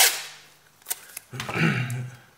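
A strip of masking tape ripped from its roll, a noisy rasp that fades over half a second, then two sharp light clicks, and a cough near the end.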